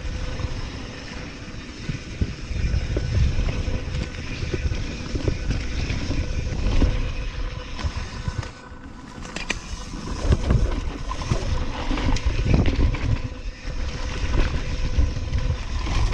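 Santa Cruz Hightower mountain bike riding fast down a dirt trail: steady rushing wind and tyre noise with frequent knocks and rattles as the bike goes over rough ground. It eases briefly about halfway through.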